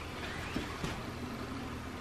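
Quiet room tone with a steady low hum, and a couple of faint soft taps and rustles from clothes being handled and packed into a suitcase.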